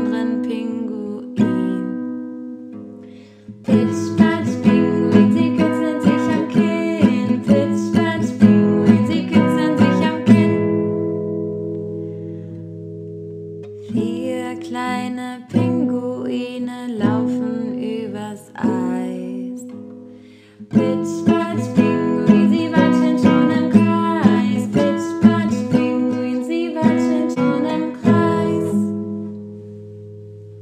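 Classical nylon-string guitar strummed in a steady chord rhythm. The strumming stops about ten seconds in and the chord rings out for a few seconds before it starts again, with a short lull around two-thirds of the way through.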